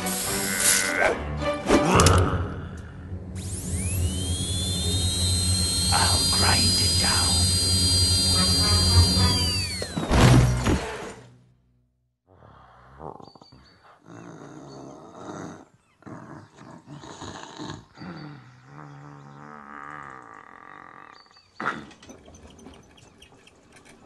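High-speed dental drill whining: it spins up to a high steady pitch, holds for about six seconds and winds down about ten seconds in, over a loud low rumble. Quieter music follows after a brief silence.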